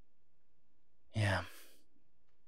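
A man sighing once, about a second in: a short, low voiced sound that trails off into a breathy exhale.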